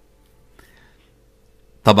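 A pause in spoken narration with faint background noise and a thin steady hum, then the voice resumes near the end.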